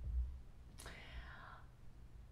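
A person's short, audible breath, a soft airy hiss about a second in. A low thump comes at the very start.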